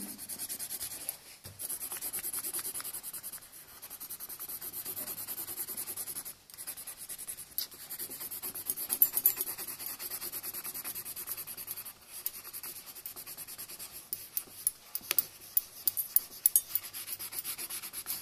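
Coloured pencil shading on paper in rapid back-and-forth strokes, laying down an even sheen of colour. The scribbling stops briefly a few times, and near the end the strokes come more separately and sharply.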